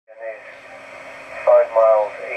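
Speech heard over an amateur radio link, narrow and tinny, with a steady hiss underneath. A short word comes near the start, then mostly hiss, and the voice resumes about a second and a half in.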